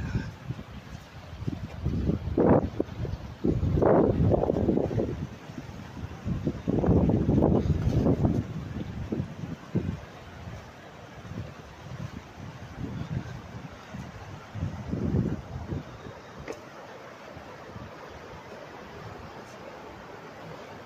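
Wind buffeting the phone's microphone in irregular gusts of low rumble, strongest in the first half. A steadier, quieter rush of flowing water from the fish pass's stepped channel is left beneath as the gusts die down.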